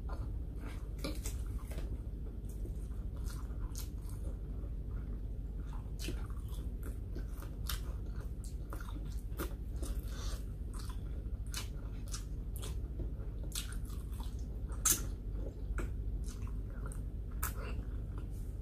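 A person chewing a hand-eaten meal of rice, pork chop and eggplant close to the microphone: many short wet clicks and smacks of the mouth over a steady low hum, with one louder click late on.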